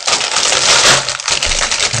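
A plastic Doritos chip bag crinkling continuously as hands pull it open.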